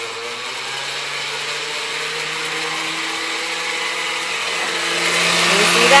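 Countertop blender running steadily, churning water and torn scrap paper into pulp. Its hum steps up in pitch about two seconds in and grows louder near the end.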